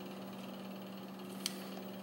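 Quiet room tone with a steady low hum. About one and a half seconds in comes a single faint click from handling a stainless Kimber Pro Raptor II 1911 pistol.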